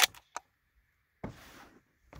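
A few sharp metallic clicks, then about a second later a short scraping slide: the bolt of a Mossberg Patriot bolt-action rifle being worked to chamber the next round.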